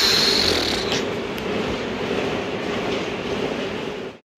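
Manual slat-belt treadmill running under jogging steps: a steady, train-like rolling rumble of the slats over their rollers. A breath is blown out through pursed lips during the first second.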